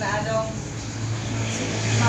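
A motor vehicle's engine running, heard as a low steady hum that grows louder about a second in, with a brief bit of talk at the start.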